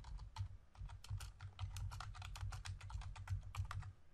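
Typing on a computer keyboard: a quick, steady run of keystrokes over a low hum.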